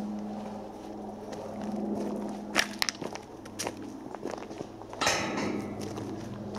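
Footsteps crunching on a gravel and dirt woodland path, with a few sharper steps in the middle, over a low steady hum. A brief rush of noise comes about five seconds in.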